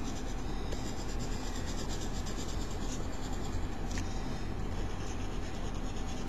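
A Cretacolor Aqua Stic water-soluble oil pastel scratching across paper in quick short hatching strokes, over a faint low hum.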